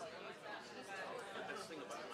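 Audience chatter: many people talking at once in pairs, a steady blur of overlapping conversation with no single voice standing out.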